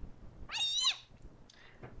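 A single short, high-pitched call, about half a second in, whose pitch rises and then falls, with quiet room tone around it.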